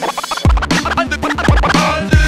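Hip hop track with a kick drum and a stepping bass line, and a break of quick turntable scratches between the rapped lines.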